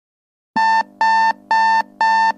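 Wake-up alarm beeping: short beeps of one steady pitch, repeating about twice a second, starting about half a second in.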